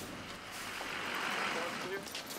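A steady rushing hiss of rain and wind on the microphone of a moving camera, with faint muffled voices.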